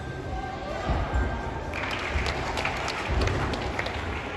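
A gymnast's high bar dismount landing on a thick mat with a heavy thud about a second in, followed by applause from the hall.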